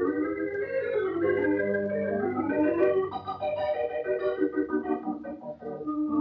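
Organ playing a musical bridge of sustained chords whose notes shift and move, the kind of cue that marks a scene change in a 1940s radio drama.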